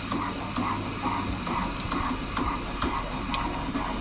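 Fetal heartbeat from a pregnancy ultrasound, played back through a phone's speaker: an even pulse a little over twice a second, about 136 beats per minute.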